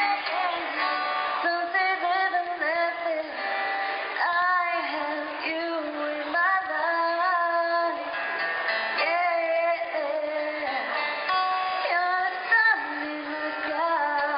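Live acoustic song: a woman singing lead into a microphone over acoustic guitar accompaniment, amplified through a small PA.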